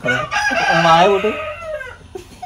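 A rooster crowing once: one long, unbroken call that falls in pitch near the end.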